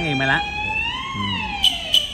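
Hainanese opera accompaniment: a high instrument holds one long note that swells upward and then slides down, over a man's voice at the start. Two sharp percussion strikes come near the end as the band comes in.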